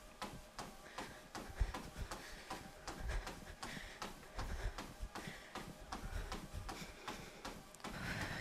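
Running footfalls on a treadmill belt: quick, evenly spaced light thuds at a steady running pace, faint.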